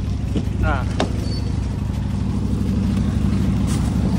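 A car engine idling close by, a steady low drone.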